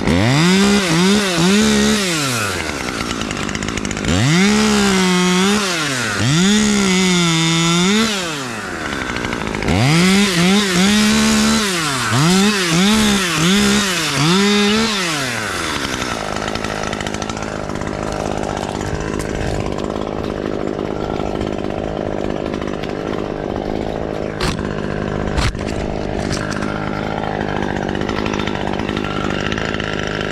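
Husqvarna T540XP Mark III top-handle two-stroke chainsaw revving up to high speed again and again in bursts of one to two seconds through roughly the first half, then idling steadily. Two sharp clicks come near the end.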